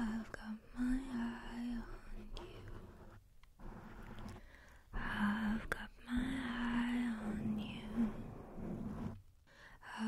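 A woman softly singing in a breathy, half-whispered voice close to the microphone, in two sung phrases with breathy pauses between them.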